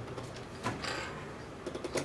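A few scattered clicks and taps of buttons being pressed on a video production switcher, over a steady low hum of equipment.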